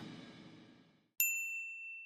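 The tail of a synthwave track fading out, then about a second in a single bright bell ding that rings on and dies away slowly: the notification-bell sound effect of a subscribe-button animation.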